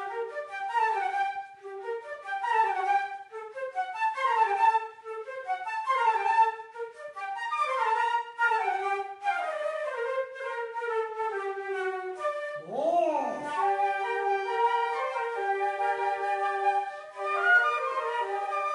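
Flute ensemble playing together, several flutes in interwoven moving melodic lines. About thirteen seconds in there is one swooping glide up and back down, after which the parts settle into longer held chords.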